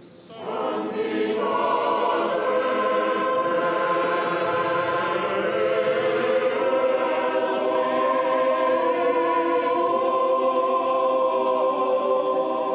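Choir singing slow liturgical chant in long, held chords, swelling in about a second in after a brief lull.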